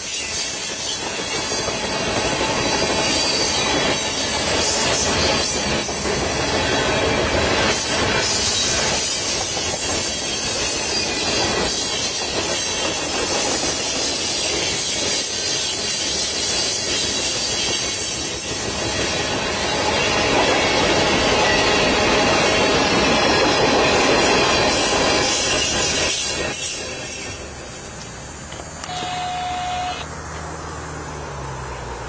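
Freight train of loaded tank cars and covered hoppers rolling past close by: a steady loud rumble of steel wheels on rail with clickety-clack over the rail joints. The noise falls away a few seconds before the end.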